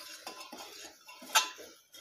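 A long metal spoon scraping and stirring vegetables and spices inside a metal pressure cooker. A sharper clink of spoon on the cooker's wall comes about one and a half seconds in.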